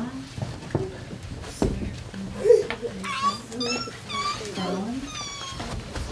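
Young children's voices chattering indistinctly, with several high-pitched, squeaky vocal calls in the second half.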